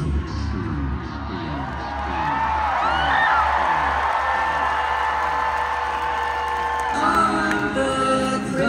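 Live rock band music between song sections: a held chord over a repeating falling figure in the low notes, with audience whoops and cheering. About seven seconds in, voices come in on a new held chord.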